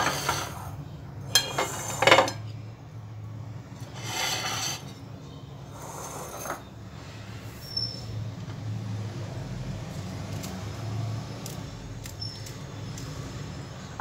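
Kitchen scissors snipping green chillies: several short cuts in the first seven seconds, then only faint light clicks, over a low steady background hum.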